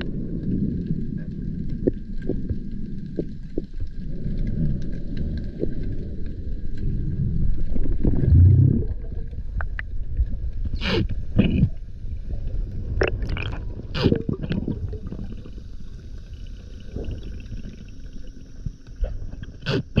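Underwater sound from a camera worn by a diver: a steady, muffled low rumble of water moving past the housing that swells briefly, then a handful of sharp clicks and knocks a little past halfway and one more at the end.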